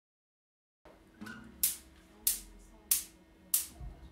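Four sharp, evenly spaced count-in clicks about two-thirds of a second apart, setting the song's tempo, starting about a second in over a faint held low note.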